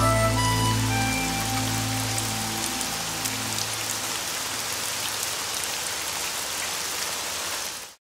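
Heavy rain falling on a wet surface, with the song's last sustained notes dying away over the first few seconds. The rain then goes on alone and cuts off suddenly just before the end.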